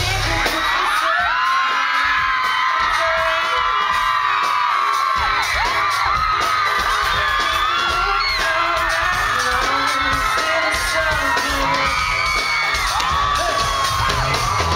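Live pop band heard from inside the audience, with many fans screaming and whooping over it. The bass drops out for the first few seconds and comes back in about five seconds in.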